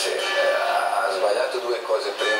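Men speaking in Italian, studio discussion heard through a television speaker.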